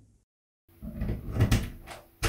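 Clicks and rattles of an apartment front door's lock and handle being worked from the outside, starting about two-thirds of a second in, as the door is about to be opened.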